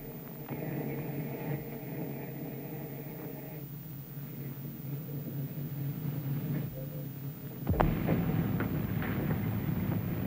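Steady low machinery hum aboard a 1930s submarine, with a held higher tone over it for the first three and a half seconds; about eight seconds in a louder, rougher rumble with rushing noise sets in.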